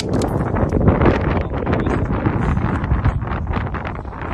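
Loud, gusty wind buffeting the microphone.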